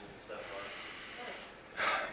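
A man's quick, audible intake of breath near the end, in a pause between sentences, over quiet room tone.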